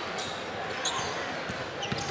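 Live basketball game sound: a steady crowd murmur in the arena and a ball bouncing on the hardwood court, with a few short high squeaks about a second in.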